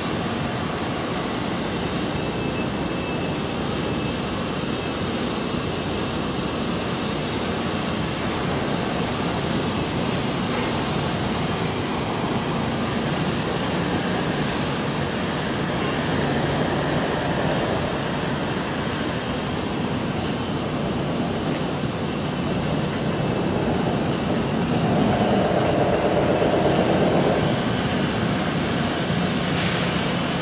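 Steady outdoor background roar with no single clear event, swelling into a louder droning passage about 25 seconds in.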